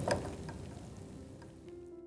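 A metal spoon scraping and tapping as chicken in thick gravy is spooned from a frying pan onto rice in a cooking pot, with a few sharp clicks over a soft hiss that fades. Gentle plucked background music comes in near the end.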